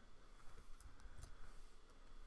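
A few faint, scattered clicks over quiet room tone.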